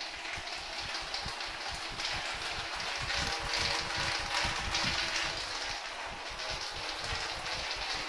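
Small wheels of a rolling suitcase pulled over a tiled floor: a steady rattling rumble with quick, even clicks as the wheels cross the tile joints.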